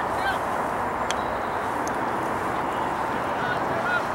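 Steady outdoor background noise with a few short honking bird calls, one near the start and a couple near the end, and a single sharp click about a second in.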